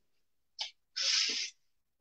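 A man's short, sharp breath: a brief puff, then a half-second breathy hiss about a second in.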